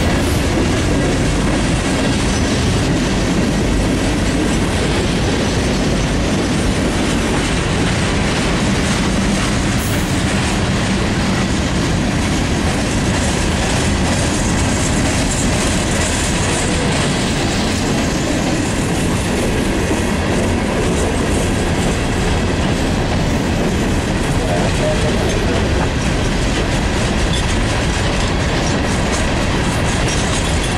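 Freight train's tank cars and open hopper cars rolling past at close range: a steady, loud noise of steel wheels on the rails.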